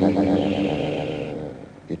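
A man's recorded speaking voice, electronically stretched so that a vowel is held as a steady drone that does not change pitch. It fades away near the end.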